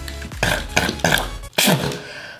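A young man's several short strained yells of pain as cardboard stuck over his nipple is pulled off his chest; the last yell is the loudest and falls in pitch. Background music with a steady low bass runs underneath and cuts off about one and a half seconds in.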